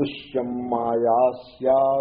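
A man chanting a Sanskrit verse in slow, melodic recitation, drawing out long held syllables in two phrases with a short breath between.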